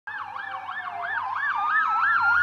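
Ambulance siren in a fast yelp, its pitch sweeping up and down about three times a second, with a second, steadier siren tone rising slowly underneath. It grows louder as the ambulance approaches.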